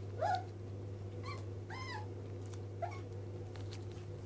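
Puppies whining in four short, high calls, the loudest one rising and falling about two seconds in.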